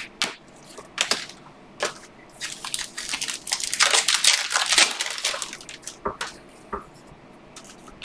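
A stack of Panini Optic football trading cards being slid and shuffled over one another by hand: a run of dry swishing and scraping card on card, busiest in the middle, with a couple of light clicks near the end.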